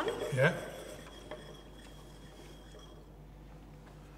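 A few spoken words, then quiet room tone with a faint clink of a wine glass about a second in as it is lifted from the bar counter.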